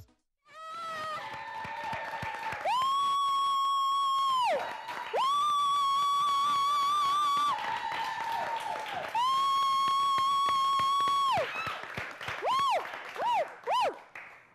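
Small studio audience clapping and cheering, with three long, high held 'woo' cheers of about two seconds each, each gliding up at the start and down at the end, then a few short whoops near the end.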